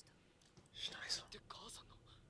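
Faint whispered speech, one short breathy burst of about a second starting just under a second in, between quieter stretches.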